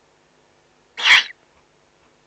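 A Eurasian eagle-owl chick gives one short, harsh, rasping hiss, its begging call, about a second in.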